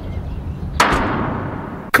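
A single loud crash about a second in that rings away for about a second over a steady low hum, then a sharp click just before the vocal comes in; it is the opening hit of the rock song.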